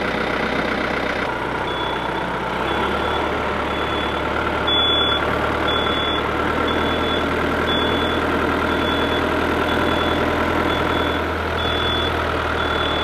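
Yanmar YT359 tractor's diesel engine running steadily, with its safety beeper sounding a short high-pitched beep about every two-thirds of a second from about two seconds in.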